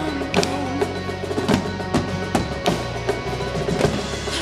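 Live band music with a strong percussion part: marching snare, bass drum and drum kit hits over a steady bass line, with a short sung line in the first second.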